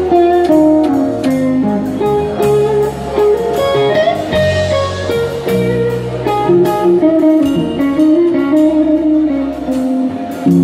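A live blues band playing: a Les Paul-style electric guitar carries a melodic line of held, stepping notes over bass guitar, drums and keyboard.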